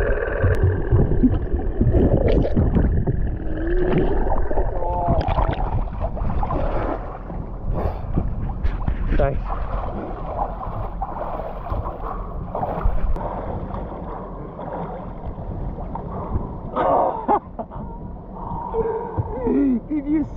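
Muffled water noise and bubbling picked up by a camera held underwater, with a heavy low rumble. Later there is splashing at the surface against a boat's side, with muffled voices.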